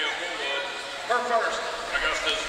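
Indistinct talking voices, with no clear bounce or impact.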